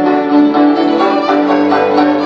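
Folk band music led by fiddles, a lively tune with notes changing quickly.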